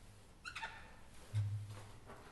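Felt-tip whiteboard marker squeaking as it writes on the board, a short run of squeaks about half a second in. A brief low hum follows in the second half.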